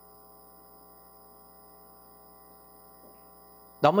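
Faint, steady electrical hum from a handheld microphone's sound system, with a man's voice cutting in right at the end.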